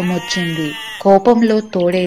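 A goat bleating once, a long wavering bleat lasting about a second, then a voice speaking.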